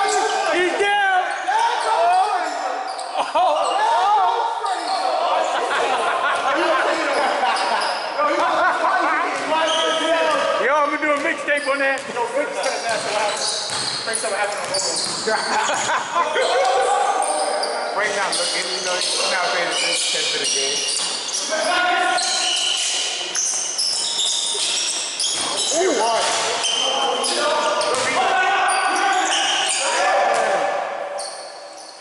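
Basketball game in a large gym: the ball bouncing on the court floor amid players' indistinct shouts and calls, echoing around the hall.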